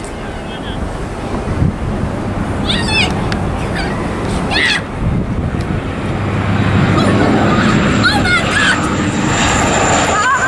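Bombardier Dash 8 Q400 turboprop airliner on final approach, its propeller and engine drone growing louder about seven seconds in as it comes low and close, with a thin high whine joining near the end. Wind buffets the microphone throughout as a heavy low rumble.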